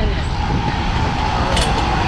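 Heavy diesel engine running steadily at idle, a deep rumble with a faint steady whine above it. A light click comes near the end.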